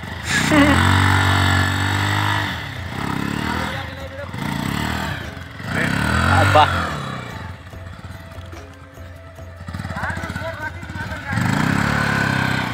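Motorcycle engine revved in bursts while its rear wheel spins and digs into soft sand, the bike stuck. The revs climb and hold for about two seconds at the start, with shorter rising bursts around the middle and near the end.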